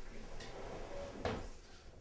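Wooden dining chairs being handled at a table: a soft scrape about half a second in and a louder short knock a little past halfway.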